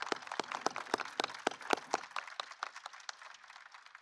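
Audience applauding, the clapping thinning out and fading over the last second or so.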